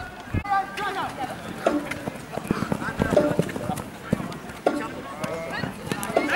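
Jugger players shouting to one another across the pitch during play, with a few sharp knocks scattered among the shouts.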